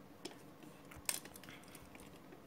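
Faint handling noise of a metal spin-on oil filter being turned over in the hand, with a light click just after the start and a sharper clink about a second in.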